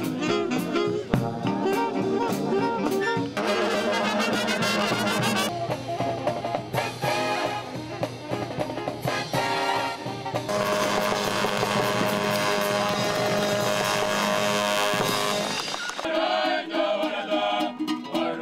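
Military brass band playing, with saxophones, trombones, trumpets and sousaphone. The music changes abruptly several times, as from edits, and for a sustained stretch in the middle it holds long chords. In the last two seconds it gives way to a group singing.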